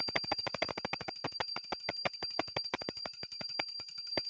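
Small brass puja hand bell (ghanti) rung by hand in rapid, even strokes, about ten a second, with a steady high ring sustained beneath the clapper strikes.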